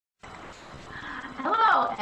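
Steady recording hiss, then a woman's voice beginning to speak, with one drawn-out word in the last half second.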